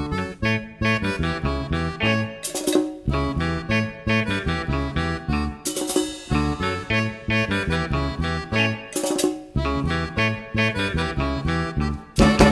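Live cumbia band playing an instrumental passage: button accordion melody over electric bass, congas and drum kit, with a steady dance rhythm.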